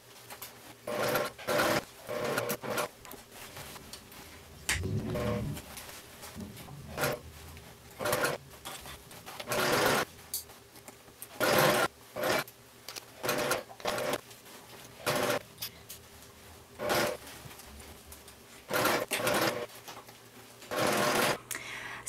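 Domestic sewing machine stitching a lining seam in short runs, starting and stopping about fifteen times, including backstitching in two spots.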